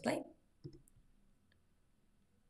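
Soft computer mouse clicks: one about half a second in, then a few fainter ticks.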